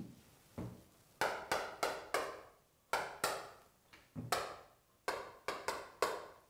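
Chalk tapping and scraping on a blackboard as short line marks are written: about a dozen quick strokes, mostly in pairs.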